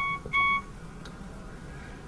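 Two short electronic beeps at the same pitch, the second slightly longer, about a third of a second apart.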